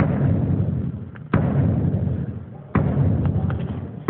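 Bass drum struck three times, about once every second and a half, during a soundcheck. Each deep thud comes through the sound system and rings out for about a second.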